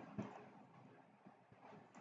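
Near silence: faint room tone with a few soft, scattered clicks of a computer mouse.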